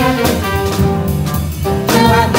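Live jazz band playing: a horn section of trumpet, trombone and saxophones holds long notes together over drum kit and piano.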